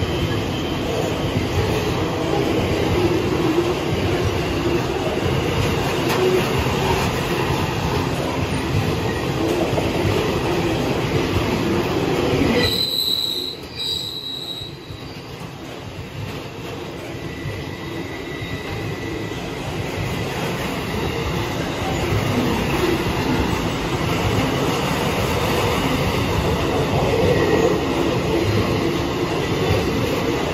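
Freight train container wagons rolling past at speed, with a steady rumble of wheels on rail. About halfway through the noise drops for a few seconds and a brief high-pitched squeal sounds, then the rolling noise builds back up.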